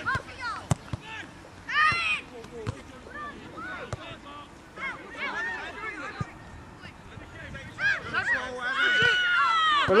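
Distant shouts and calls from players and spectators at a youth football match, a high call about two seconds in and a long held shout near the end, with a sharp thud of the ball being kicked under a second in.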